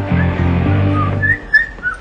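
A person whistling a few short, separate notes. Low background music plays under the first notes and stops a little over halfway through.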